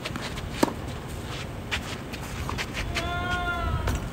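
Tennis ball struck hard by a racket about half a second in, followed by a few lighter ball hits or bounces. Near the end, a drawn-out high-pitched call rises slightly and falls over about a second.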